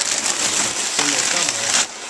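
Wrapping paper and packing paper rustling and crinkling as hands push through them in a cardboard box, a dense crackle that stops abruptly near the end.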